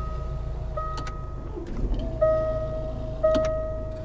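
Range Rover Evoque's 2.0-litre Ingenium diesel idling just after start-up, a low steady hum, while the rotary gear selector dial motors up out of the console, with a couple of light clicks. A repeating electronic chime sounds over it.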